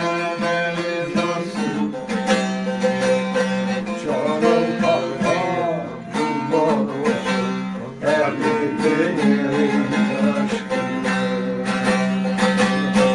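Bağlama (long-necked Turkish saz) strummed and plucked in a brisk folk accompaniment, a steady low drone note sounding under rapid picked strokes.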